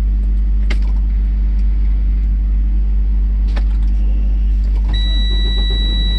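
Steady low hum inside a Freightliner truck cab, with a faint click about a second in and another around the middle. About five seconds in, a steady high electronic warning tone from the dash starts and holds, as the ignition is switched back on after the AC control reset.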